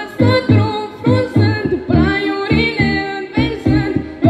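Romanian folk song performed through a PA: a male voice sings over amplified accompaniment with a steady, quick low beat of about four pulses a second.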